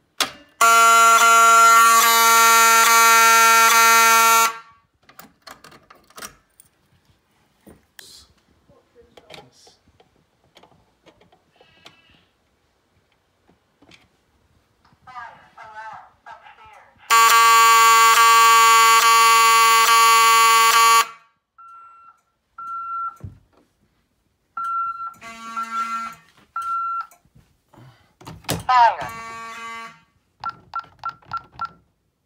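Fire alarm horn sounding a steady, loud buzzing tone in two bursts of about four seconds each, one near the start and one around the middle: brief audible walk-test signals on a Fire-Lite MS-9600 fire alarm system. Short, repeated high-pitched beeps follow near the end.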